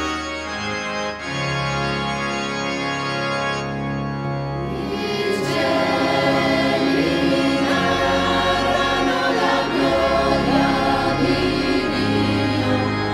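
Italian church song opening with sustained organ chords; a choir comes in singing about five seconds in, over the organ.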